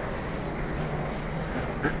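A steady low rumble of background noise during a pause, then a woman clears her throat near the end.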